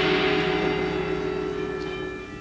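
Orchestra and tubular bells ringing on a big sustained chord that slowly dies away, the bell tones hanging on as it fades.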